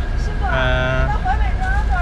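A bus running, heard as a steady low rumble from inside the cabin. Over it, a man's voice holds a drawn-out 'eee' for about half a second, then says a few words.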